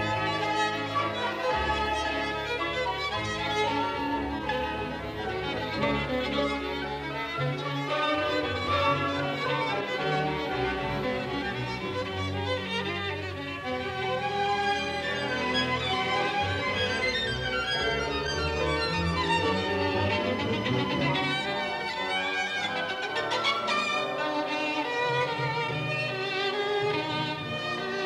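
Solo violin playing a violin concerto with a symphony orchestra, the violin line moving continuously over the orchestral strings.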